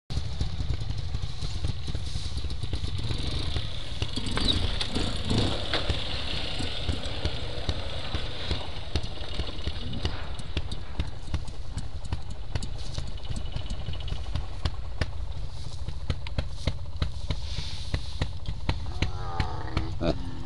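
Steady low wind rumble on the microphone over trials motorcycle engines running on the practice ground, with people's voices at times, most clearly near the start and again near the end.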